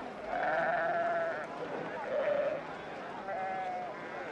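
A flock of sheep bleating: three long, wavering bleats, the first and loudest lasting about a second.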